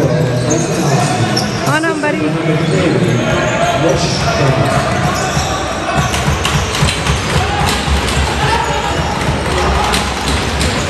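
Box lacrosse play in an arena: repeated short knocks of sticks clacking and the hard rubber ball bouncing on the floor, with voices of players and spectators echoing in the hall.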